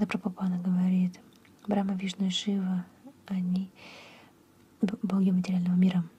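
Speech: a voice talking softly in short phrases with brief pauses between them.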